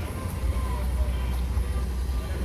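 Steady low rumble on the microphone under faint, distant voices of people in an open plaza.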